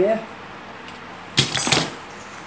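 Brief handling noise: a sharp onset followed by a rustling scrape lasting under half a second, about a second and a half in, as the tripod and its box are moved on the table.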